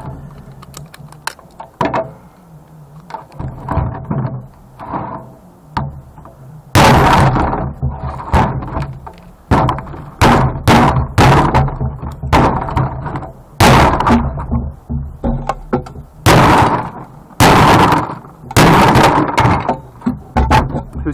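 Hammer blows breaking apart a CRT monitor's copper-wound deflection yoke. A few lighter knocks and handling come first; then from about 7 s, a dozen or so sharp, heavy strikes with a short ring, irregularly spaced about one or two a second, as pieces chip off.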